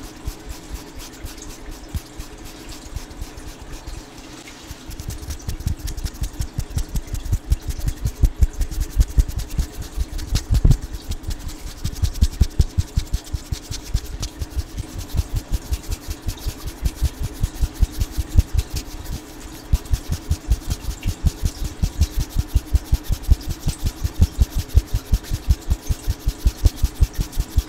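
Bristle brush stroked rapidly against a microphone, several strokes a second. Each stroke is a scratchy rasp with a low thud. The brushing is softer for the first few seconds, then grows faster and louder.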